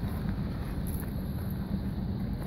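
Engine idling steadily with a low hum, with wind buffeting the microphone.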